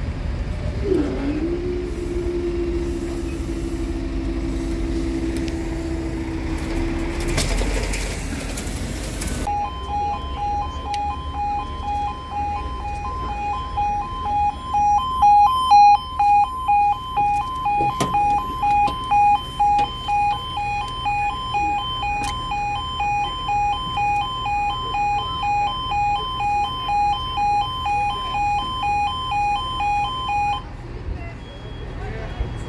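A level crossing's warning alarm sounding, a pulsing two-tone signal that starts about a third of the way in and carries on steadily. Before it there is a steady mechanical hum for several seconds.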